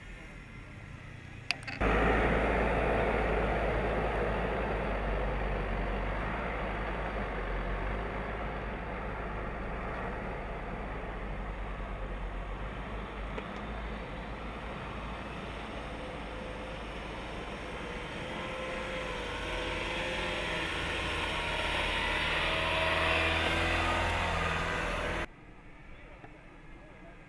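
Jeep Cherokee driving slowly over a dirt and rock trail: engine running with the rumble and crunch of tyres on the trail surface. The sound starts suddenly a couple of seconds in, and from near the end a wavering engine note comes through more clearly before it cuts off suddenly.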